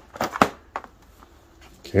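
A few sharp clicks and light knocks from a hard pool cue case being handled and opened, its clasps snapping, mostly in the first second.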